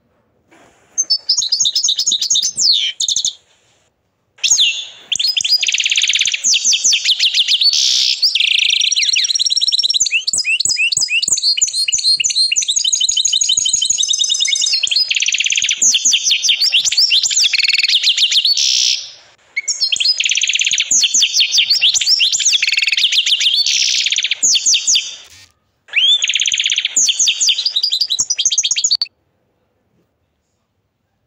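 Agate canary singing long, high-pitched phrases of fast rolling trills and rapidly repeated notes, broken by a few short pauses. The song stops abruptly about a second before the end.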